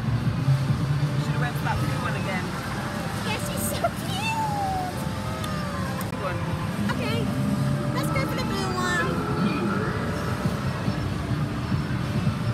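Amusement arcade din around a claw crane machine: a steady low hum of machines, with short electronic bleeps and sweeping game tones over it and voices in the background.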